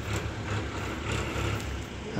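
Steady low rumble of outdoor background noise, with no distinct event.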